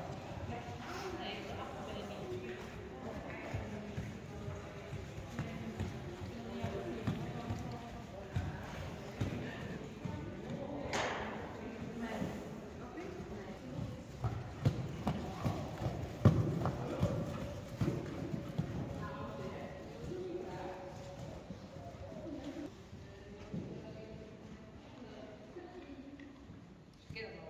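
Hoofbeats of Friesian horses trotting on the sand footing of an indoor riding arena, a run of low thuds with a louder one about two-thirds of the way through, under background music.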